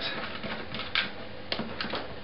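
A hand tool working at the old pickup's fitting on an acoustic guitar, loosening it: a few light clicks and scrapes, the clearest about a second in.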